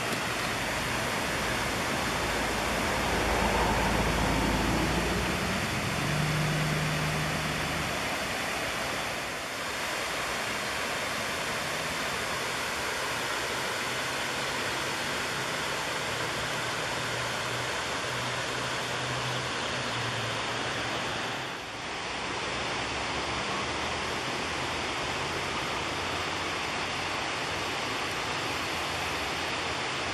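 Water spilling over a low river dam and rushing through rocky rapids below, a steady even rush of falling water. A brief low rumble joins it about three to seven seconds in.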